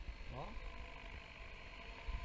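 Radio-controlled 550-size model helicopter in flight: a faint, steady whine of its motor and rotor, with a light hiss, as it passes in front of the camera.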